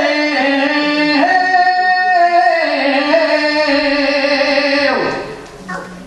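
Singers performing a traditional Valencian folk song in long held notes, accompanied by a band of plucked strings (guitars, lutes and bandurrias). The sung phrase dies away about five seconds in.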